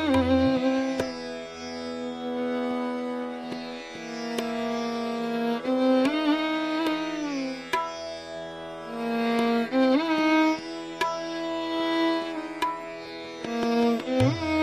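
Hindustani classical violin playing a raga: long held bowed notes joined by smooth slides between pitches.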